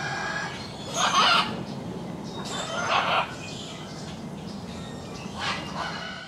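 Three loud animal calls, each under half a second, about a second, three seconds and five and a half seconds in, over a steady low background noise.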